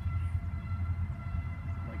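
Norfolk Southern manifest freight train's cars rolling past: a steady low rumble, with a few faint, thin, steady high tones over it.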